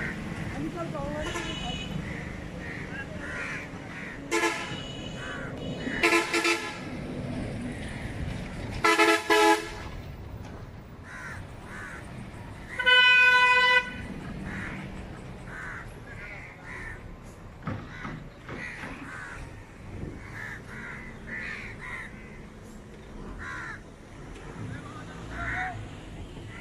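Vehicle horns honking over a steady background rumble: single short toots about four and six seconds in, two quick toots around nine seconds, and a longer steady horn blast about thirteen seconds in, the loudest sound. Crows caw in the background.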